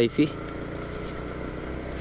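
Yamaha MT-15's 155 cc single-cylinder engine running steadily while the motorcycle rides along at low road speed, with wind and road noise.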